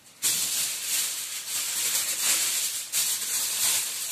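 Loud rustling and crinkling from material handled close to the microphone, starting suddenly and carrying on with two brief dips near the end.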